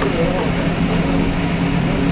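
A steady machine drone with a constant low hum, with faint voices in the background.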